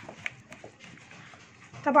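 Hands tossing oiled, spiced sliced vegetables in an aluminium baking tray: soft wet squelching and rustling with a few light ticks. A woman starts speaking near the end.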